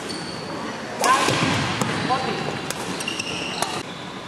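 Badminton hall between points: a burst of spectators' voices about a second in, with sneaker squeaks on the wooden court and a few sharp clicks.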